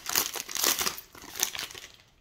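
Plastic wrapper of a trading-card pack crinkling as it is torn open and handled while the cards are pulled out. The crinkling comes in quick bursts and fades out near the end.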